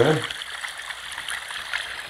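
A steady, water-like rushing sound, like a trickling stream, coming from a subwoofer-and-satellite speaker set, with faint crackles in it.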